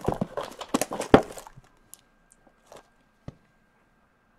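Plastic shrink-wrap crinkling and cardboard clicking as a sealed Upper Deck hockey card blaster box is opened by hand, busiest in the first second and a half with one sharper click. It then goes mostly quiet, with a few faint ticks and a single knock about three seconds in.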